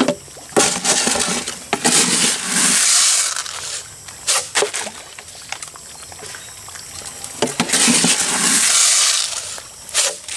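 Pond water splashing and sloshing in two longer bursts a few seconds each, with a few sharp splashes between: tilapia feeding at the surface as scoops of feed are thrown in.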